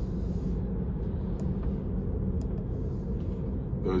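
Steady tyre and road noise inside the cabin of a moving Tesla electric car, a low rumble with no engine note.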